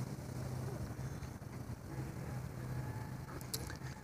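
Quiet outdoor background: a steady low rumble with a few faint clicks near the end.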